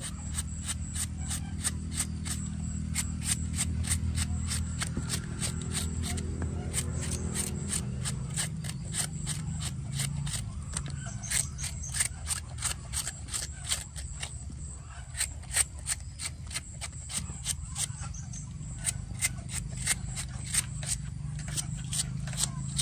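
Kitchen knife shaving thin strips off a fresh bamboo shoot held in the hand: a quick, uneven series of short crisp cuts, a few a second.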